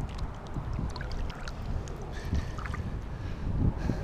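Wind rumbling on the microphone over choppy pond water, with small splashes and lapping as a bass is released at the bank's edge.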